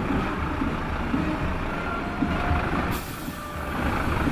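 Diesel engine of a Scania P 360 fire truck running at low speed as the heavy three-axle truck rolls slowly past. About three seconds in comes a short, sharp hiss of compressed air from its air brakes.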